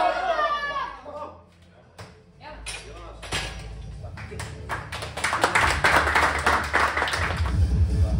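A group of people clapping, starting as scattered claps and building into a burst of applause; background music with a beat comes in near the end.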